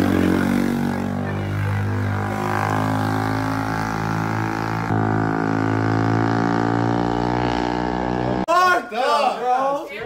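Quad ATV engine running as it pulls away, a steady drone whose pitch sinks slowly. It cuts off sharply at about 8.5 seconds, giving way to men talking and laughing.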